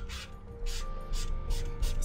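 Twin-tip felt marker nib rubbed back and forth across sketchbook paper in about six short scratchy strokes, blending one colour over another.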